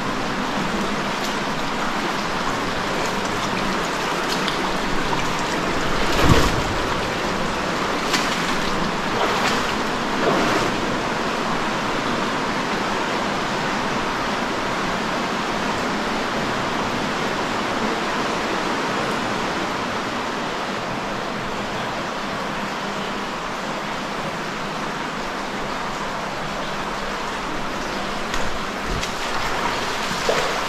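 Underground cave river rushing steadily over rock, a constant loud wash of water, with a few brief knocks or splashes, the loudest about six seconds in.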